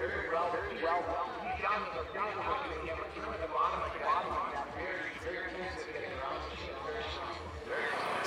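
Indistinct voices talking in the background throughout, with no clear words. A low rumble comes and goes beneath them.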